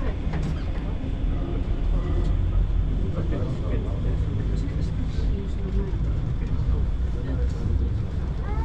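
Steady low rumble inside a Roosevelt Island Tramway cabin as it climbs away from the station, with passengers' voices faint underneath.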